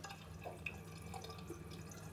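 A few faint, small clicks and taps over a low steady hum, from makeup brushes and products being handled.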